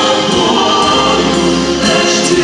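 Voices singing a slow song with instrumental accompaniment, the notes held steady.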